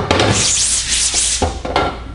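Hand brush scrubbing a wet screen-printing mesh coated with mesh-prep degreaser, in uneven back-and-forth scratchy strokes.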